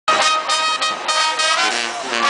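Brass band music, with horns playing held notes that change about every half second.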